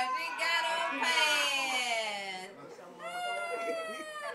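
A woman laughing and squealing in high-pitched cries that fall in pitch, with one long falling cry near the end.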